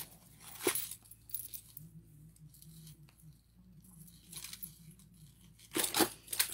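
Quiet handling noises of carded jewelry packaging: a sharp click under a second in, soft rustling, and a louder rustle near the end.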